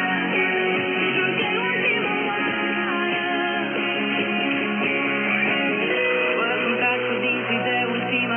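Guitar music from a shortwave broadcast playing through a small DRM radio receiver's speaker, steady and continuous.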